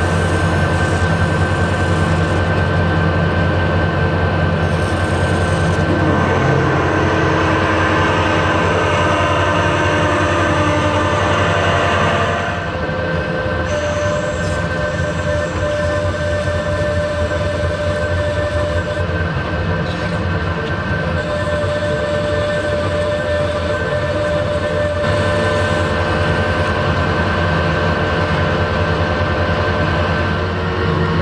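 Metal lathe running with a steady geared whine and hum while a large twist drill in the tailstock bores into a metal bar turning in the chuck. About twelve seconds in, the sound drops a little and a new steady tone joins it.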